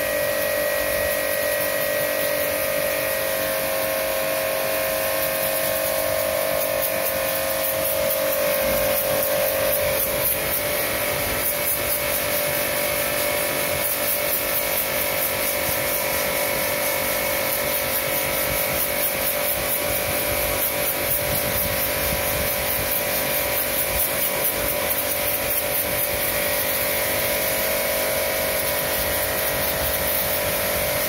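Pressure washer running steadily, its motor and pump giving a constant hum with a higher whine, while the water jet hisses against the coil of a split air conditioner's indoor unit during a jet cleaning service.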